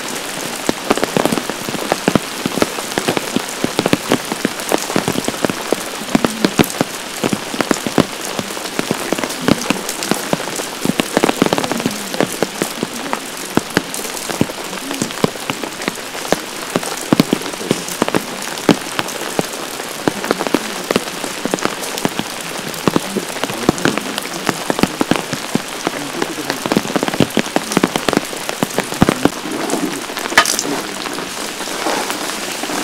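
Heavy rain falling steadily, with a dense patter of individual drops striking close by.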